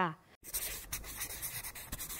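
Scratchy, rustling paper-like sound effect, full of small clicks, starting about half a second in and cutting off abruptly.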